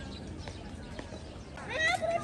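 Low background murmur of people, then, near the end, a short high-pitched cry rising sharply in pitch, like a meow.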